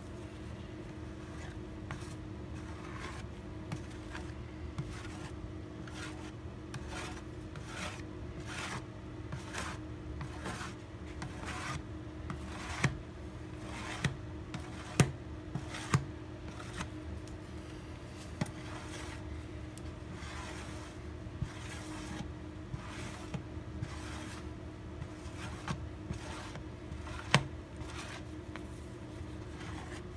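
Plastic squeegee scraping and rubbing in repeated strokes across a guitar back, working epoxy pore filler into the wood grain. A few sharper clicks come around the middle and again near the end.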